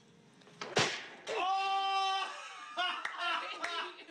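A sudden smack just under a second in, then a high voice holding one long shriek for about a second, followed by excited, broken-up voices.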